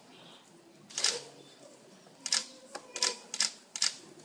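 Horse's hooves clacking on the church floor: six sharp, uneven strikes, one about a second in and a quicker run of five in the last two seconds.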